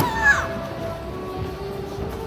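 Processional music with held, sustained notes. A sharp click comes right at the start, followed by a short, high squeal that falls in pitch.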